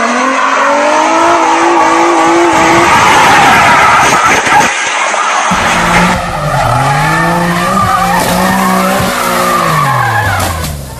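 Nissan 350Z's V6 revving hard under tyre squeal as the car slides. After a cut about five and a half seconds in, a second car revs and slides, its engine pitch dipping, climbing again, then falling away near the end.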